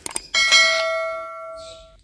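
Subscribe-button sound effect: a few quick mouse clicks, then a single bell ding that rings out and fades over about a second and a half.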